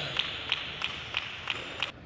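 Table tennis rally: the celluloid-type plastic ball cracking off rubber bats and bouncing on the table in an even rhythm, about three sharp clicks a second, some seven in all.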